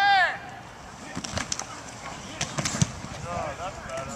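A short loud shout opens, then sharp clacks and knocks of football pads and helmets meeting as players run a drill, in two bunches in the middle, with more shouting near the end.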